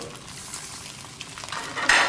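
Spice-crusted sea bass fillet frying skin side down in olive oil in a non-stick pan: a steady sizzle, with a louder rush of sizzle near the end.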